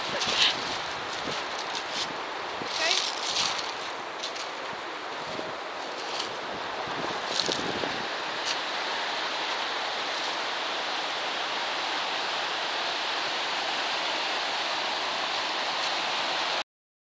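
Rough sea waves breaking and washing onto a shingle beach, a steady rushing noise mixed with wind buffeting the microphone. A few short sharp crackles come in the first half.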